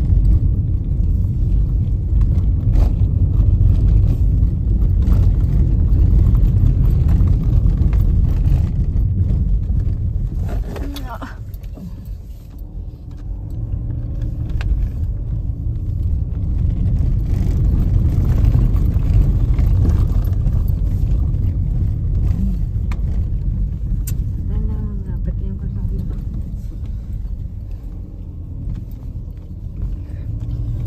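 Low, steady rumble of a moving vehicle's road and wind noise, with wind buffeting the phone microphone, dipping briefly quieter about twelve seconds in.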